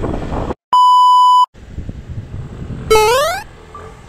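Hard edit: motorbike riding noise cuts off about half a second in. A loud, steady electronic beep tone follows, lasting under a second, and then a short rising pitched sound effect comes near the end.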